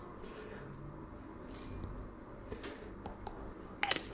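Dried Szechuan peppercorns trickling from a small glass jar into a ceramic bowl, with scattered light ticks, and a sharper single click near the end.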